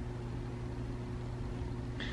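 A steady low mechanical hum of room background noise, with no other events.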